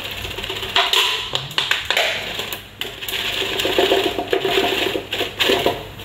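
Mung bean sprouts being pulled out of a cut-open plastic bottle into a stainless steel colander: the plastic crinkles and rustles, with many light clicks and knocks throughout.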